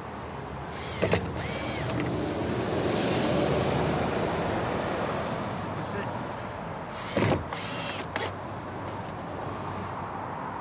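Cordless drill driver screwing a drop bolt onto a timber gate in short trigger bursts: a couple of bursts about a second in and again about seven seconds in. Between them a broad rising-and-falling noise peaks around three to four seconds in.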